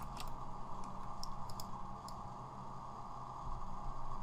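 A few light clicks of a computer mouse and keys, over a steady low hum from the recording setup.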